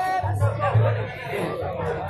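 Men's voices singing a devotional song together in a hall, with musical accompaniment and a repeated low beat under the singing.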